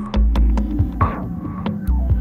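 Electronic music: a deep, sustained synth bass comes in just after the start, under a run of sharp percussive clicks and hits.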